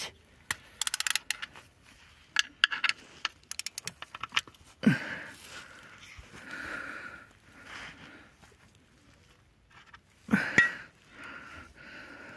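Ratchet wrench clicking in three quick bursts on the oil drain plug under the engine's oil pan, followed by softer rustling and handling noises.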